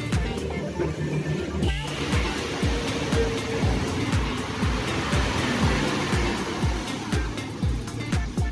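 Background music with a steady beat. From about two seconds in until near the end, a steady hiss of a fogging machine spraying disinfectant mist runs under the music.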